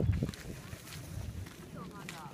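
Footsteps coming down stone steps onto a gravel path, heaviest in the first moment and then lighter.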